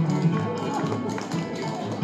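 Live bluegrass music with plucked strings, over which the sharp taps of clogging steps sound.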